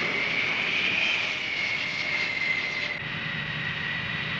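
Jet aircraft engine running with a high, steady turbine whine over a rushing noise. The whine rises slightly and eases back, and the sound drops a little in level about three seconds in.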